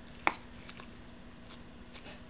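Handling noise at a workbench: one sharp knock about a quarter second in, then a few faint ticks, over a faint steady hum.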